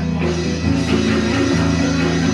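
Live rock band playing, with guitar chords to the fore over a full, steady low end.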